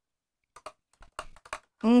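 A quick run of light clicks and taps, about eight in a little over a second, after a short silence; a woman's voice says "OK" at the very end.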